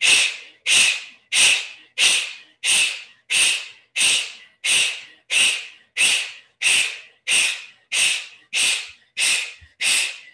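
Bhastrika (bellows breath): forceful, rapid breaths pumped through the nose, about three every two seconds, each a sharp rush of air that quickly fades.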